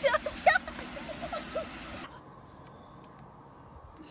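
A child's high voice laughing and shouting over a steady hiss, cut off abruptly about halfway through. The rest is a much quieter outdoor background with a few faint clicks.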